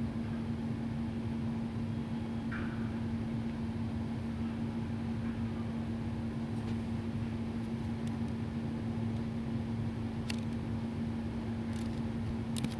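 Steady background hum with one constant low tone, with a few faint clicks near the end.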